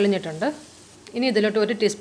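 Mostly speech: a woman narrating in Malayalam, with a short pause about half a second in. Under it, a faint sizzle of onion-tomato masala frying in the pan.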